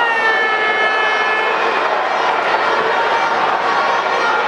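Arena crowd noise, loud and steady, during a lucha libre match. Over the first second and a half a held, high-pitched tone from the crowd sounds above it, falling slightly.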